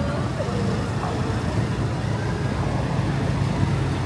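City street ambience: a steady traffic rumble with faint voices of passers-by, strongest early on.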